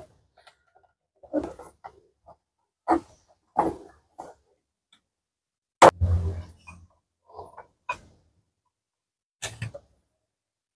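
A rubber V-type fan belt being worked by hand over a truck engine's cooling fan and pulleys: scattered rubbing and scraping against metal, light knocks, and one sharp click about six seconds in followed by a dull thump.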